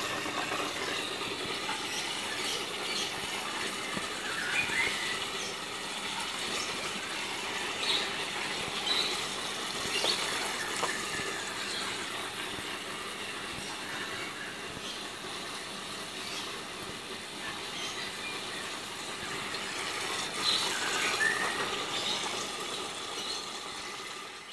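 Steady outdoor background hiss with a few short, high chirps scattered through it.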